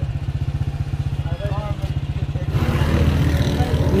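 A small motorcycle engine idling with a steady fast putter, growing louder and noisier about two and a half seconds in.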